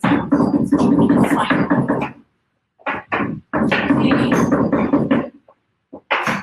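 Rapid knife chopping on a cutting board, a fast run of strikes that breaks off about two seconds in, resumes in a short burst, then runs again until near the end.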